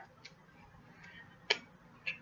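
A few isolated clicks from a tarot deck being shuffled by hand: a faint tick shortly after the start and a sharper click about one and a half seconds in.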